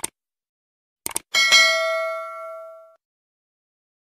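Subscribe-button animation sound effect: a mouse click, then a quick double click about a second in, followed by a bright notification-bell ding that rings out and fades over about a second and a half.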